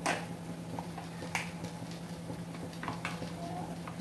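Plastic sachet of tomato paste being squeezed out over diced eggplant in a stainless steel pan: a few faint clicks and crinkles over a steady low hum.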